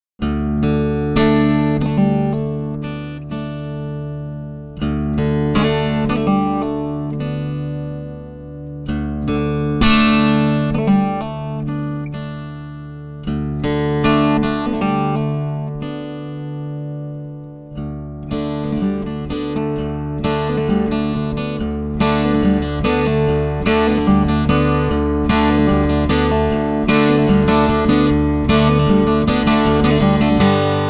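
Acoustic guitar playing an instrumental introduction: a few chords struck and left to ring for several seconds each, then busier fingerpicked playing from a little past the middle.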